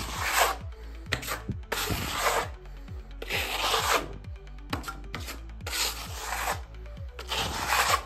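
Steel plastering spatula scraping wet skim-coat filler across a wall in repeated sweeping strokes, about five long scrapes roughly every second and a half with a few shorter ones between.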